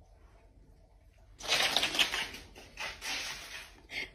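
About a second and a half in, a burst of rapid rustling and scratching, with fine quick ticks, starts up, runs for about two seconds and fades.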